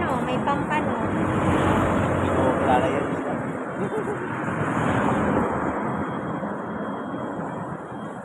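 Street traffic: a vehicle passing close by, a rushing noise that swells over the first few seconds and then fades, with brief voices near the start.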